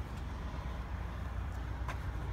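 Steady low outdoor background rumble with no distinct source, and a faint click near the end.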